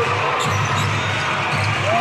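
Basketball arena ambience: a steady crowd murmur in a large hall over a repeated low thumping.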